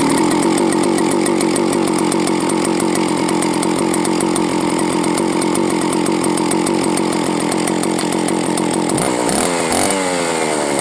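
Vintage Stihl 041AV Farm Boss two-stroke chainsaw starting cold without choke, catching at once and running loudly and steadily. Near the end the engine speed rises and falls as the throttle is worked.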